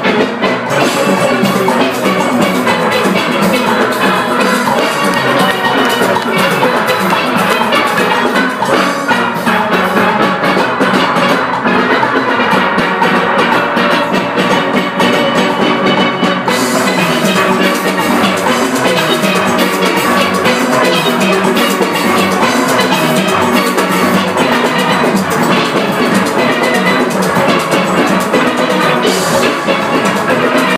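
A full steel orchestra playing a fast Panorama arrangement at full volume: chrome steel pans of several ranges, down to the barrel bass pans, over a driving drum and percussion rhythm section. The music runs without a break, and the treble grows brighter about halfway through.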